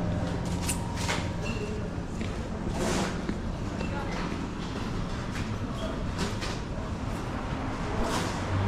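Supermarket ambience: a steady low hum with faint, indistinct voices of other shoppers and a few scattered clicks and clatters.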